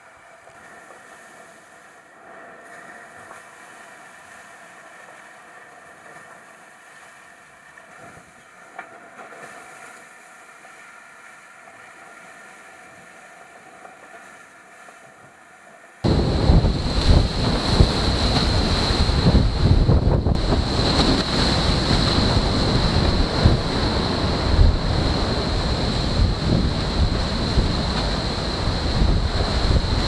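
Volvo Ocean 65 racing yacht sailing fast in heavy wind and sea. The first half is a low, quieter rush of water and wind with faint steady tones. About halfway through it cuts to a loud rush of wind hitting the microphone and spray and water tearing past the hull, with a steady high whine over it.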